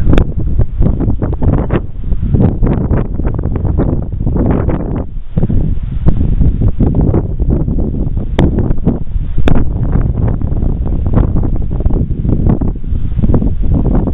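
Wind buffeting the microphone: a loud, gusting rumble, with a few brief clicks.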